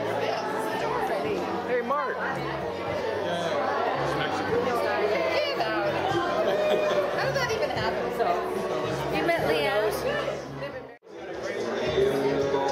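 Several people talking at once, overlapping chatter in a room, over background music; the sound drops out briefly near the end.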